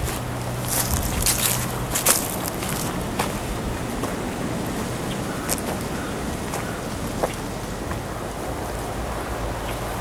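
Wind on a camcorder microphone, a steady rushing noise, with a few soft footsteps on dry grass and leaves in the first few seconds.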